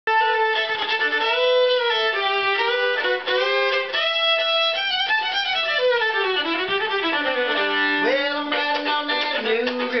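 Fiddle playing the instrumental lead-in to a song, a lively tune often with two notes at once and a run of notes sliding downward in the middle.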